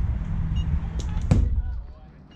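A pitched baseball striking at home plate: one sharp crack about a second and a third in, after a fainter click about a second in. A low wind rumble on the microphone runs underneath.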